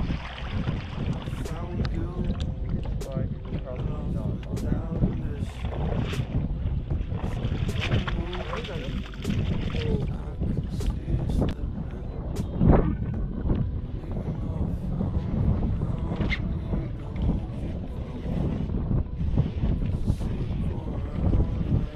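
Steady wind noise on the microphone of an open bass boat on a lake, with scattered sharp clicks and knocks. One brief rising sound stands out about two-thirds of the way through.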